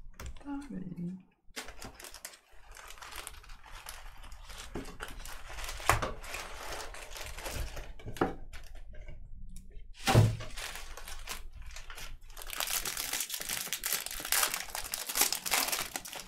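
Foil wrappers of baseball card packs crinkling and tearing as they are handled and opened by hand. There are two sharp knocks in the middle, and the crinkling is heaviest near the end.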